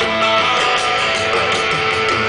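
Live rock band playing an instrumental passage, guitars to the fore, heard from within the crowd through the outdoor festival PA.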